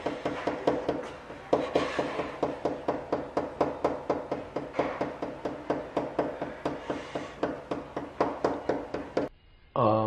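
Knuckle knocking on a wooden apartment door: rapid, steady raps, about four a second, each with a short wooden ring. The knocking keeps up almost without a break and cuts off suddenly near the end.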